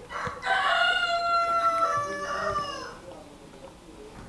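An animal's single long pitched call, about two and a half seconds long, held nearly level and dropping in pitch at its end.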